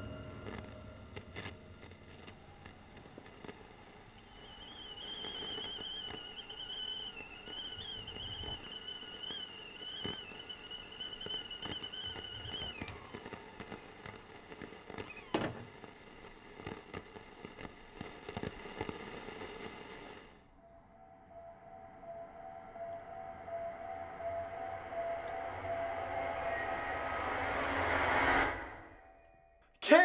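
Stovetop kettle on a gas burner whistling, a high wavering whistle that dies away about thirteen seconds in. Later a sustained tone swells louder and cuts off suddenly just before the end.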